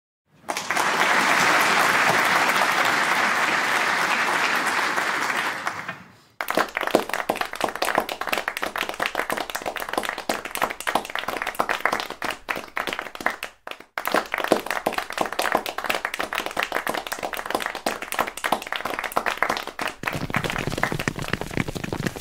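Audience applause. It starts as a steady wash of crowd noise for about six seconds, then turns into dense clapping of many hands, which breaks off briefly about two-thirds of the way in and then resumes.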